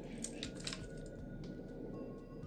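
Faint clicks and light knocks from an aluminium phone tripod mount being slid into an Arca-Swiss quick-release clamp, mostly in the first second.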